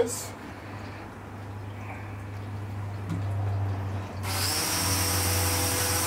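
Air Hogs Vectron Wave flying-saucer toy's small electric motor and rotor spinning up about four seconds in, a sudden steady whir with a high hiss, as it is powered up for flight.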